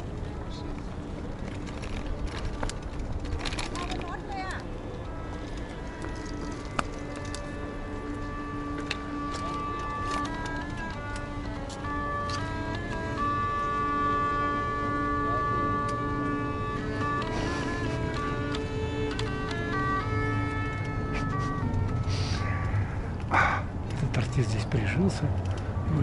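Hurdy-gurdy (Ukrainian lira) played in the street: a steady drone under a melody of held, stepping notes. The music is loudest around the middle and fades away again toward the end.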